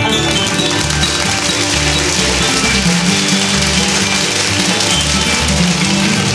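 Bluegrass band playing an instrumental passage: banjo picking over acoustic guitar, mandolin and upright bass. A steady hiss sits over the top of the music from the start, fading near the end.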